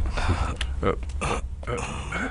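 A man's short, low vocal sounds, brief grunt-like utterances rather than clear words, over a steady low rumble.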